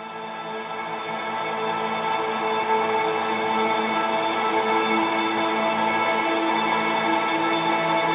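Recorded ambient electric guitar pad: a sustained, reverb-soaked chord with a prominent picking string sound. It swells in over the first three seconds, then holds steady.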